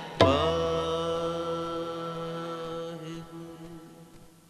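The closing note of a kirtan: a single loud tabla stroke with a deep ringing bass, over a held harmonium chord. Both ring out and fade away steadily over about four seconds.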